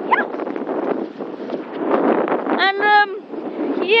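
Wind buffeting a phone microphone, a steady rushing noise, while a person runs. About two and a half seconds in comes a short, high, held wordless shout, and right at the end a shouted "Yeah!".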